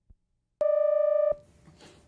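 A single electronic beep: one steady mid-pitched tone held for under a second, starting and stopping abruptly. It marks the edit where a new taped segment begins, and is followed by faint room hiss.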